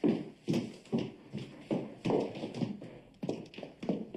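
Steps: an irregular run of knocks, about two to three a second.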